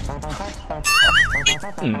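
A short, warbling comedy sound effect about a second in, its pitch wobbling quickly up and down for under a second. It plays over background music, with a short questioning "mm?" near the end.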